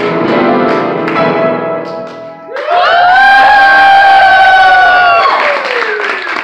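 Backing music with piano and guitar-like plucking, then about two and a half seconds in a singer holds one long, loud note that slides down at its end as the audience starts cheering.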